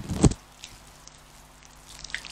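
A single short, loud thump close to the microphone about a quarter second in, as a hand brushes and knocks against the camera, followed by a few faint ticks.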